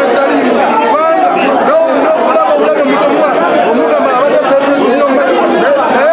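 Many people talking at once: loud, continuous crowd chatter in a large room, with overlapping voices and no one voice standing out.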